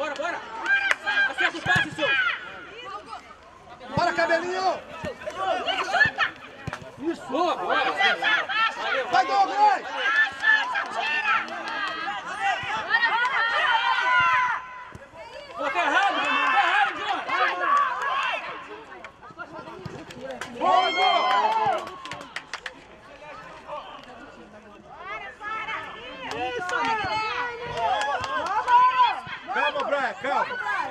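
Voices shouting and calling out across an outdoor football pitch, with overlapping chatter, coming in bursts with short pauses between them.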